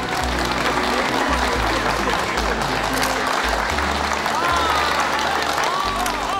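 A crowd applauding, with background music and a steady bass line under it.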